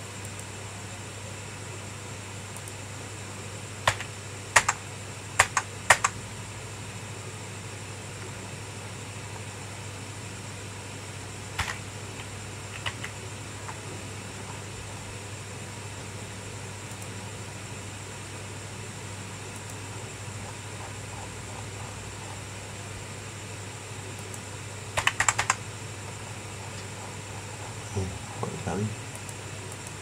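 Computer keyboard keystrokes: four taps about four to six seconds in, one or two more near the middle, and a quick burst of several keys near the end, over a steady low electrical hum.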